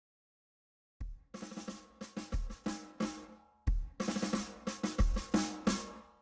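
Drum kit groove in a music track, programmed in recording software. It starts about a second in after silence, with a deep kick drum roughly every one and a third seconds under quicker snare and cymbal hits, and dies away just before the accordion enters.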